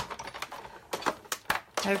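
A few light, irregular clicks and taps.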